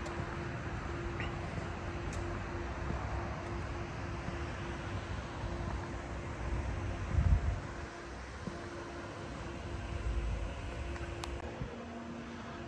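Steady outdoor background noise with a faint constant hum, and a brief low rumble about seven seconds in.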